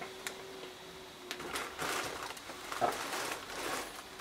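Plastic wheelie bin lid being lifted open by hand: a short click, then soft scraping and swishing as the lid swings back and the bin is handled.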